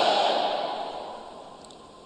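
A congregation's crowd response, many voices blending into one shout, dying away over about a second and a half.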